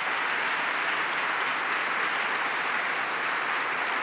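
A large seated audience applauding steadily, a dense wash of many hands clapping.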